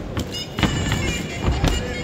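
Traditional Muay Thai fight music (sarama): a Thai oboe playing over drums, with several sharp hits through it.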